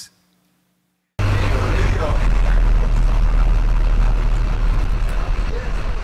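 A bus engine running with road noise, heard from inside the bus: a steady low rumble that cuts in suddenly about a second in, after a moment of silence.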